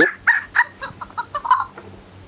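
Fingerlings baby monkey toy chattering: a quick string of short, high squeaky calls, fading out near the end.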